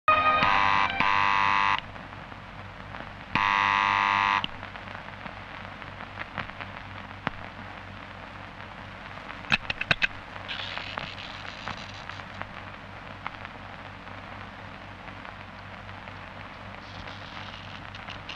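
Electric doorbell buzzing twice, each ring about a second and a half long, over the hiss of an old film soundtrack. A few sharp clicks come about halfway through as the door latch is worked.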